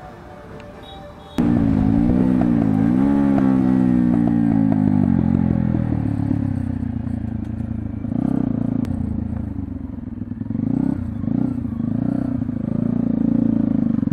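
Motorcycle engine running. It cuts in suddenly about a second and a half in, and its pitch rises and falls with the throttle.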